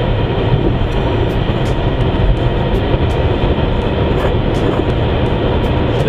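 Steady road and engine rumble inside a moving car's cabin: a deep, even noise that holds level throughout with no break.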